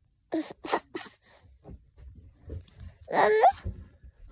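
A young child's voice close to the microphone: three short breathy huffs in the first second, then one longer squealing vocal sound whose pitch wavers, about three seconds in.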